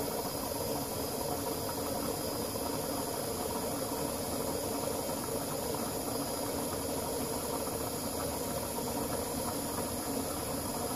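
Electric fuel pump (Aeromotive Stealth 340) running steadily, driving a venturi jet pump that moves kerosene out of a bucket, with a continuous hiss of the liquid streaming into a gallon jug.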